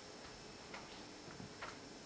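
Quiet room tone in a pause between words, with a few faint, soft clicks spread irregularly through it.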